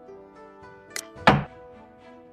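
A xiangqi piece being moved on a game board, heard as a sound effect over held background music: a light click about a second in, then a much louder thunk just after it as the piece lands.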